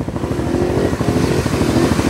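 ATV engine revving hard under heavy throttle while the quad churns through deep mud water, growing steadily louder over the two seconds, with mud and water spraying from the tyres.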